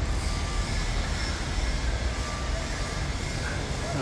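Steady low rumble of a truck's diesel engine running as the truck pulls forward, over general construction-site noise.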